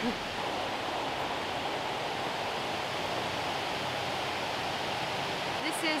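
Steady rush of river water spilling over a low weir, an even hiss that holds the same level throughout.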